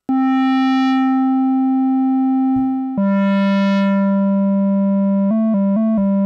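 Monophonic modular-synth voice from a square-wave oscillator, played legato: a long held note, a step down to a lower held note about three seconds in, then a quick flurry of note changes near the end. The tone brightens briefly after each new note and then mellows. The Neo Trinity envelope is set to hold while the key is down, so each note sustains instead of dying away.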